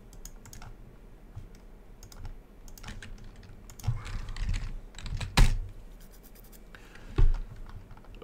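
Typing on a computer keyboard: scattered key clicks, with two louder knocks, the loudest about halfway through and another near the end.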